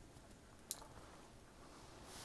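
Near silence: faint room tone, with one short click about 0.7 s in.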